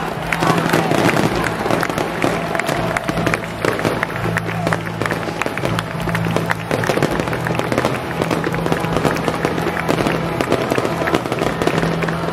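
Aerial fireworks crackling: a dense, continuous run of rapid pops and bangs.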